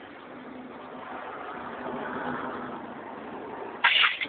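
A passing vehicle whose noise swells and fades around the middle, then a brief loud burst of sound just before the end.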